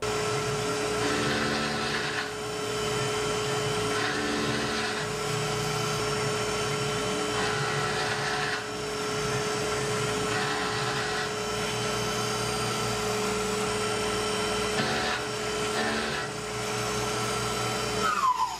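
Tormach PCNC 1100 CNC mill's spindle running steadily with a half-inch end mill cutting an aluminum pocket under flood coolant. The steady whine carries a hiss of cutting and coolant that swells several times as the tool bites harder into the metal.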